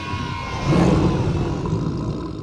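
A male lion roaring: a deep, rough roar that swells about half a second in and tails off toward the end.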